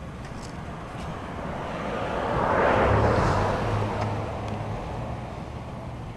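A vehicle passing on the street, its noise swelling to a peak about three seconds in and fading away, with a low engine hum under the loudest part.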